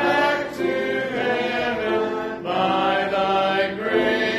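Hymn singing: a man's voice at the pulpit microphone with the congregation, in long held notes that change pitch about once a second.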